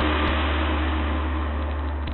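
Radio-drama sound effect of a car engine running, cutting in suddenly just before and then slowly fading out as a scene bridge.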